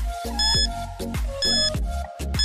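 Quiz countdown-timer music: a steady electronic beat with a short, high, bell-like beep about once a second, marking the seconds ticking down.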